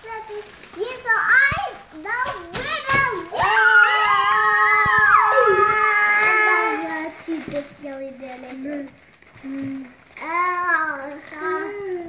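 Children yelling and cheering, with one long loud cry from several kids held for about three seconds in the middle. A few sharp clicks come before it, and quieter shouts follow near the end.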